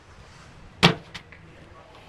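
A bean bag landing with a single sharp thud on a plywood cornhole board about a second in, followed by a faint click.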